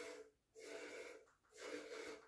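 Streams of goat milk squirting into a stainless steel milk pail during hand milking, in a steady rhythm of about one hissing squirt a second.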